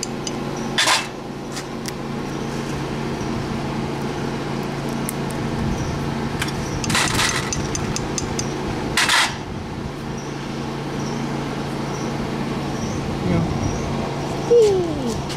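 A claw hammer tapping a small fire-assay button to knock the slag off it: three sharp taps, about a second in, near seven seconds and near nine seconds, with a few faint clicks between. A steady low motor hum runs underneath.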